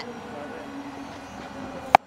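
Cricket bat striking the ball once near the end: a single sharp crack from a cleanly middled big hit, over a low steady background.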